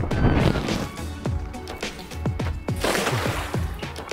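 Background music with a steady beat, and about three seconds in a hissing splash as a weighted cast net lands spread out on the water.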